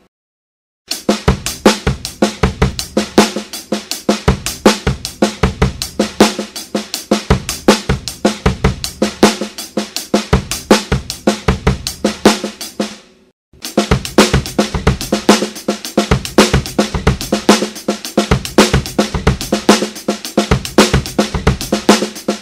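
Drum kit playing a linear groove on hi-hat, snare with accents and ghost notes, and bass drum, each stroke sounding alone with no two limbs hitting together, in a fast, even stream. It starts about a second in, breaks off for a moment a little past halfway, and starts again.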